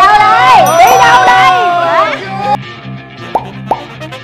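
Several voices exclaiming and laughing at once over light background music, loudest in the first two seconds. Near the end come two quick rising pop sound effects, one right after the other.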